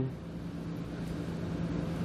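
A steady low hum with a faint hiss in the background; no distinct clicks or knocks.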